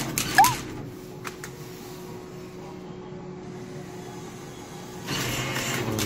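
Crane claw machine's mechanism running, with a sharp click and a short squeak about half a second in, then a steady whirring hum that grows louder near the end.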